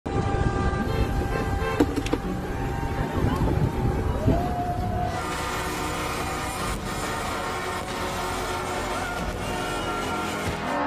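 Semi-truck air horns blowing in long held blasts over vehicle noise, with voices from a roadside crowd in the first half. The sound changes abruptly about halfway through, where a new stretch of horns and traffic begins.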